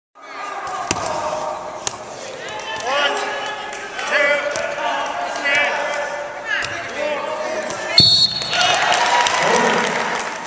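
Sounds of a wrestling bout in a gym: several voices shouting, with thuds and knocks from the wrestlers on the mat. About eight seconds in there is a loud knock and a short, high, steady whistle blast, typical of a referee's whistle.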